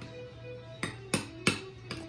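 A spoon clicking against a small bowl while stirring whipped cream, four sharp clicks in the second half, over faint background music.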